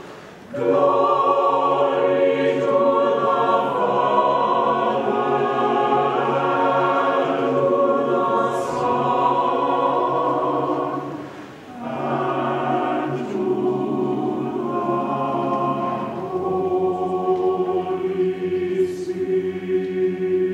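Church choir singing in parts, with long held notes. The singing pauses briefly just after the start and again a little past halfway, then carries on.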